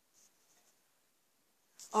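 Near silence with a couple of faint, soft rustles, then a person starts speaking near the end.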